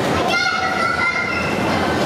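A young child's high-pitched voice, a drawn-out call held for about a second and a half, over the hum of a busy hall.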